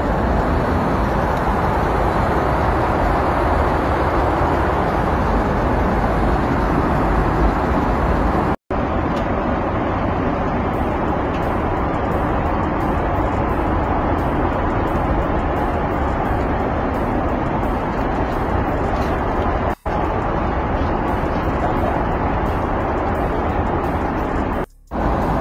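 Steady, even rush of airliner cabin noise, the sound dropping out abruptly twice, about a third of the way in and again near the end.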